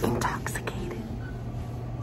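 A person's voice, low and breathy, briefly in the first half-second, over a steady low hum of room noise.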